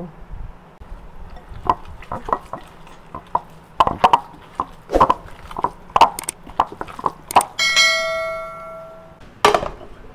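A spatula mixing a ground pork and shrimp filling in a glass bowl, knocking and clicking against the glass many times. Near the end a bell-like chime rings for about a second and a half, followed by a single thump.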